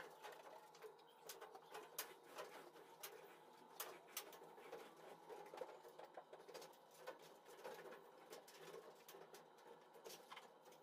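Faint rubbing of a microfiber towel wiping down car body panels, drying off wax and grease remover, with scattered light clicks.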